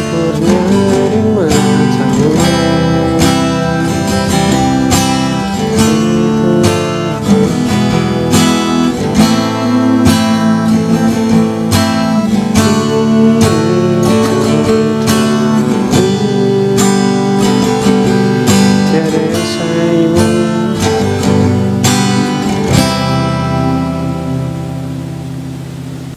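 Acoustic guitar strummed in a steady rhythm through the chord progression Dm–G–C–Dm–E–Am–D–G–Dm–G–C. It ends on a final chord left ringing and fading over the last few seconds.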